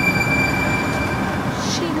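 Steady rumbling background noise with a thin, high, unchanging whine over it.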